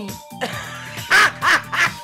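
Three short, loud cries from a person's voice about a second in, over background music.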